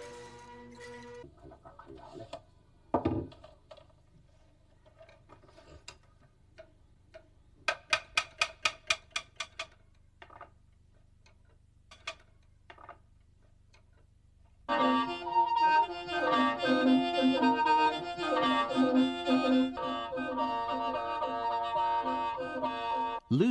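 Lusheng, the Miao bamboo free-reed mouth organ: a held chord dies away in the first second, then a few knocks and a quick run of about ten sharp taps around the middle. From about 15 s the lusheng plays loudly again, several reeds sounding together in sustained chords.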